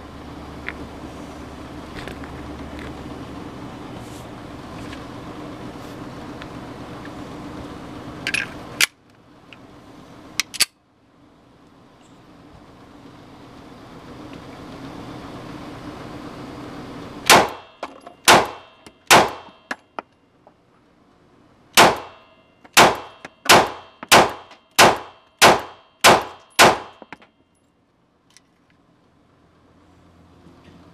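Springfield Armory Hellcat 9mm pistol firing eleven shots, each a sharp crack with a short ringing tail. Three come about a second apart, then after a pause of a couple of seconds eight faster ones follow about 0.6 s apart. The last shot empties the magazine and leaves the slide locked open.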